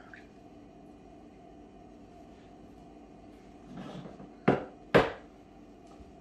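Kitchen items set down on a counter: a short rustle, then two sharp knocks about half a second apart as a glass bowl and a wooden cutting board are put down, the second knock the louder. Before them there is only faint room sound.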